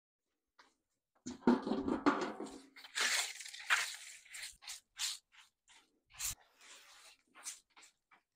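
Long-handled broom sweeping litter across a tiled floor in short, repeated strokes about two a second. It begins with a louder scrape with a ringing tone about a second and a half in, which is the loudest sound.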